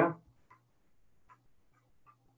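The end of a spoken word, then near silence on a video-call line: a faint steady low hum and a few faint, short ticks.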